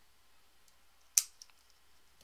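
A single sharp click about a second in, followed by a fainter tick, against quiet room tone.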